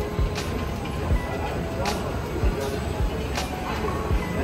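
Supermarket background music and indistinct voices over a low rumble, with a short sharp tick about every second and a half and scattered low thuds.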